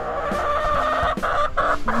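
Hen vocalizing on a nest box: one long drawn-out call, then two shorter ones after about a second.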